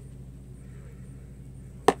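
Two sharp taps close together near the end, a makeup brush knocking against an eyeshadow palette, over a low steady room hum.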